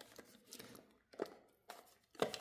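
A few faint clicks and rubs of hard plastic as a Momcozy M6 wearable breast pump is pried apart by hand.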